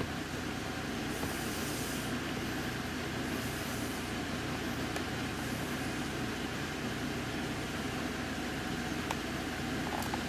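Steady room noise: a low, even hum with a hiss over it, with one faint click near the end.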